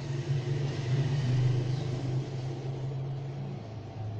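A low, steady mechanical rumble, growing louder about a second in and easing off near the end.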